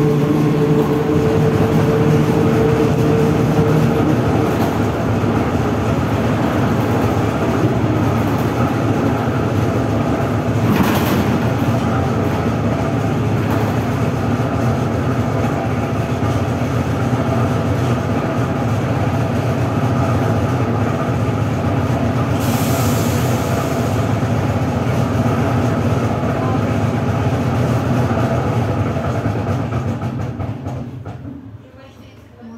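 Cabin ride noise of a ZiU-682G trolleybus in motion: a steady rumble with rattling from the body, and a hum that fades out a few seconds in. A single knock comes about a third of the way through, and a short hiss about three-quarters through.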